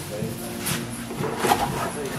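Indistinct talking with two light knocks, a little under a second apart.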